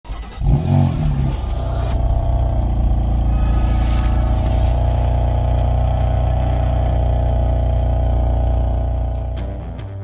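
Intro sound effect of a car engine: a quick rev in the first second, then a loud steady drone mixed with music, fading out near the end.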